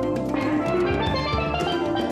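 Steel pan played with mallets in quick ringing notes over a drum kit, as part of a live band.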